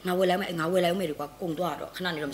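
A woman talking in Burmese, speech only.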